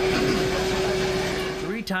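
Hemodialysis machine running: a steady mechanical whir with one constant hum, its blood pump turning. A voice comes in near the end.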